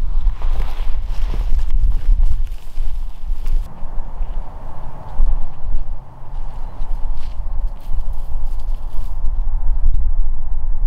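Low rumble of wind on the microphone, with faint rustling and a few light ticks in the first couple of seconds.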